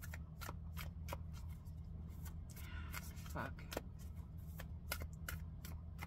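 A deck of oracle cards being shuffled by hand: an irregular run of short, soft card clicks and slaps.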